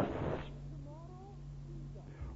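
A faint, high-pitched cry or squeak about a second in, gliding in pitch, heard over the steady hum of an old cassette recording. A short hiss comes at the very start.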